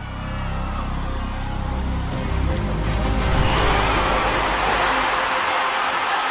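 Background music fading in and building, growing louder over the first three seconds, then holding.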